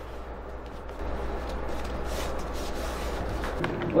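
Quiet room tone with a steady low hum and faint rustling and shuffling, a little louder from about a second in.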